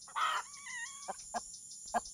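A chicken gives a short squawk followed by a wavering call, then a few sharp taps, with a steady high chirring of crickets behind.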